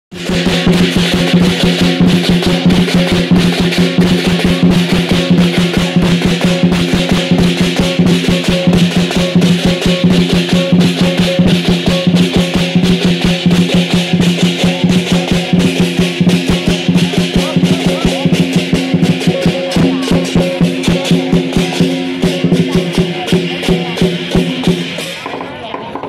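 Lion dance percussion: a large drum beaten in a fast, steady beat with cymbals clashing over it. It plays loud throughout and thins out near the end.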